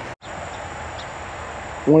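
Outdoor rural background: a steady hiss with a thin, continuous high insect trill, broken by a short dropout just after the start and ended by a man's voice near the end.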